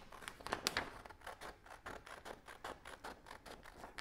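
Scissors cutting around a circle of printed paper, a quick, faint run of short snips, several a second.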